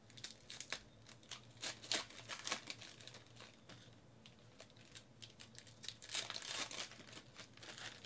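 Plastic wrapper of a Donruss baseball card pack crinkling and tearing as the pack is opened and the cards are handled, in two bursts of crackling: one starting just after the beginning and another about six seconds in.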